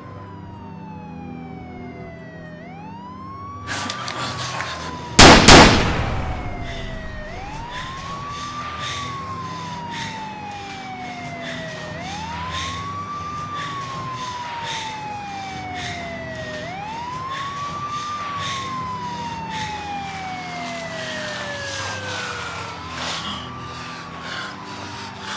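A siren wailing in slow cycles, each a quick rise in pitch and then a long fall, with one very loud gunshot about five seconds in. A low, steady hum lies underneath.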